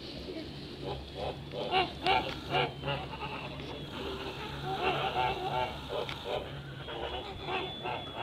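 Kholmogory geese calling: short honking calls in quick runs, bunched about two seconds in and again around the middle, over a steady low hum.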